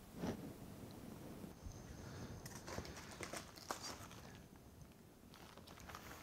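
Hands rummaging in a cardboard box of plastic-cased (CGC-slabbed) comic books: a string of light clicks and knocks of the hard plastic cases, with some rustling, mostly in the middle of the stretch.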